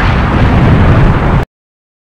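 Loud explosion sound effect, a long low rumble from a fireball effect, that cuts off abruptly about one and a half seconds in.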